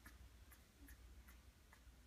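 Near silence with faint, regular ticking, about two to three ticks a second.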